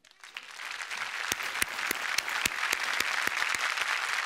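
Studio audience applauding: the clapping swells up from silence over about the first second, then holds steady.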